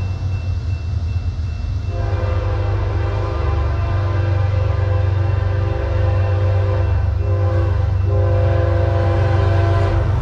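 An approaching BNSF diesel locomotive sounds its multi-note air horn. One long blast starts about two seconds in, then comes a brief break and a short note, then the horn sounds again, all over a steady low rumble.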